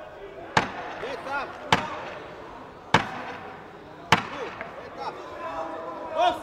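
Four sharp knocks at ringside, evenly spaced a little over a second apart, marking the last ten seconds of the round. Shouting voices sound between the knocks.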